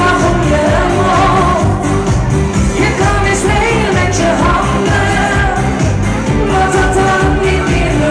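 Live pop song: a woman singing into a microphone over a loud amplified backing track with a steady beat and bass.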